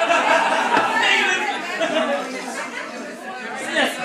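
Overlapping, indistinct chatter of several people talking at once in a room, with no clear words.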